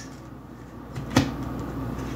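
A single sharp knock about a second in, followed by a low steady hum.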